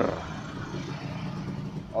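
A low, steady engine hum, as of a motor vehicle running, under faint rustling.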